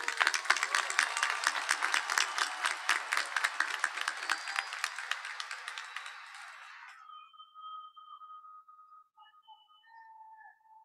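Large crowd applauding, then cut off abruptly about seven seconds in, leaving only a few faint, thin steady tones.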